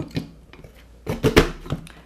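A Toke e Crie 360 paper punch pressed down through cardstock: a short cluster of plastic clicks and knocks as the blade cuts the corner, starting about a second in, the loudest in the middle of the cluster.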